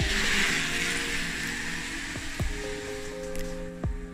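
Studded bicycle tyres hissing on a concrete floor as an electric bike passes close and rolls away, fading over the first second or two. Background music with sustained chords plays throughout.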